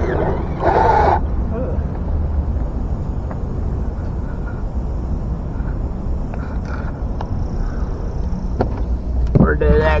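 Steady low outdoor rumble with no clear source, broken by a brief voice about a second in and talk starting near the end.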